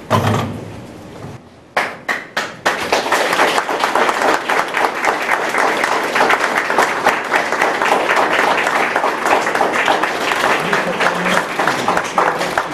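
A few separate hand claps about two seconds in, then many people applauding steadily for the rest of the time.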